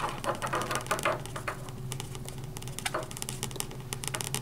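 Hands working the neck of an inflated rubber balloon into a plastic bottle top on a CD: irregular small clicks and rubbing, over a low steady hum.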